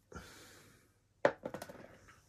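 Handling noises: a faint breathy hiss, then a sharp knock about a second in, followed by a few light clicks.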